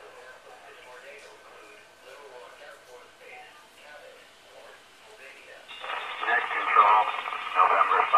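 A 2-metre amateur radio stream playing through computer speakers. Faint voice traffic is heard at first; near the end a much louder transmission opens with a burst of hiss, and a narrow-band voice comes through.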